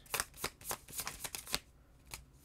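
A tarot deck being shuffled by hand: a quick run of crisp card snaps that stops about three-quarters of the way through.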